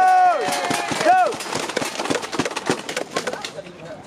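A long held shout that cuts off just after the start, a short call about a second in, then scattered hand claps from a few tennis spectators for a couple of seconds, thinning out near the end.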